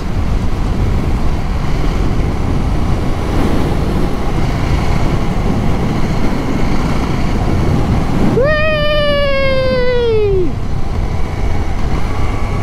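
Wind rushing over the microphone with road noise from a motorcycle riding at speed, a loud steady rush. About eight seconds in, a pitched tone comes in and slides slowly down for about two seconds before dropping away.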